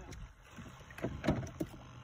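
Small waves lapping and slapping against the hull of a drifting jet ski, with a few short splashes about a second in and a faint spoken "yeah".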